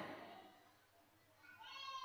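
Near silence as the last word's echo dies away in the hall, then a faint, short high-pitched call with a wavering pitch about a second and a half in.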